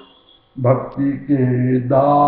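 A man singing a Hindi devotional bhajan line in long held notes, starting about half a second in, after the preceding keyboard-and-drum music fades away.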